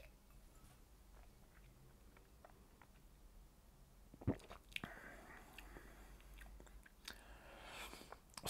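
Faint mouth sounds of someone tasting a sip of whisky: small lip smacks and tongue clicks, with one sharper click about four seconds in.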